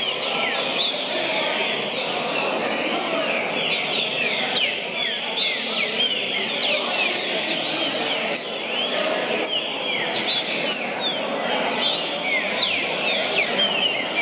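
Several caged green-winged saltators (trinca-ferro) singing at once, their quick whistled phrases overlapping continuously, over a steady murmur of crowd voices.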